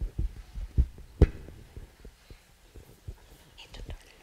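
Microphone handling noise: a string of dull low thumps, with one sharper knock a little over a second in, as a microphone is picked up and moved.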